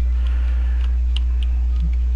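A few faint plastic clicks from the head of a Transformers Star Wars AT-AT toy being turned, heard over a loud, steady low electrical hum.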